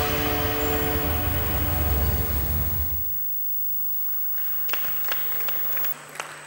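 Music with a strong bass line ends about halfway through. After it, scattered light applause starts up over a steady low hum.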